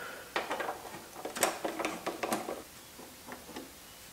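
A small screwdriver working the taillight's mounting screws and the light being handled: a string of light, irregular clicks and taps, sparser near the end.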